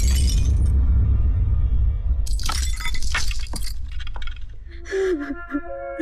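Glass of a picture frame crashing and shattering on a floor, with a deep rumble under it, then a second burst of breaking glass about two and a half seconds in. Dramatic music notes follow near the end.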